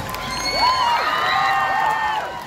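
Concert crowd cheering, with many high-pitched screams rising and falling over one another.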